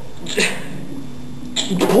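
A man's voice between words: a sharp, noisy breath about half a second in, a drawn-out low vocal sound, then another sharp breath just before he speaks again.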